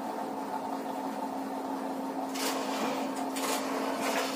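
Marker writing on a whiteboard, with short scratchy strokes about two and a half and three and a half seconds in, over a steady low hum.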